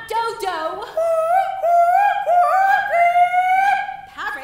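A high voice warbling nonsense syllables in the play's invented bird language instead of English: a string of short held notes, each swooping upward, the pitch climbing overall, like yodelling.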